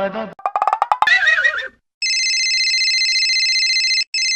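A sung note ends, followed by a short burst of clicks and a warbling, whinny-like sound effect. About two seconds in, a mobile phone starts ringing with a steady, high electronic trilling ringtone.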